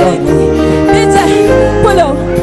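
Loud, amplified live band music: sustained chords over a heavy bass line.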